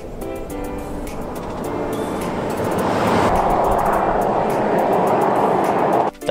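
A four-wheel drive passing on a sealed highway: engine and tyre noise swells steadily as it approaches and is loudest near the end. Background music plays underneath.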